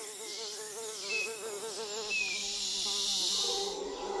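A fly buzzing, its pitch wavering up and down, the sound of an insect struggling while stuck on a sundew's sticky tentacles; the buzz softens and drops a little near the end. Two brief high chirps sound faintly behind it.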